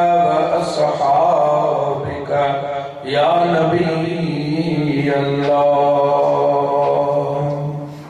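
A man chanting salawat on the Prophet into a microphone, in long held melodic notes: one phrase trails off about two seconds in, and a new one rises at three seconds and is held until it fades near the end.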